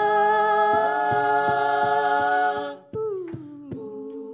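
All-female a cappella group singing a held, wordless chord over a steady beat of vocal percussion, nearly three hits a second. The chord cuts off sharply near three seconds in, and after a brief gap the voices come back sliding down to a lower chord while the beat carries on.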